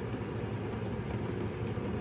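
Electric food dehydrator's fan running with a steady, even hum, with a few faint clicks about twice a second over it.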